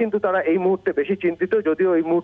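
A man speaking Bengali continuously over a telephone line, his voice narrow and thin as a phone call sounds.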